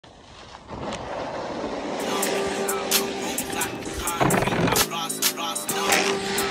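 Snowboard sliding over packed snow, a scraping hiss that builds over the first two seconds. Then a music track with a steady beat comes in over it.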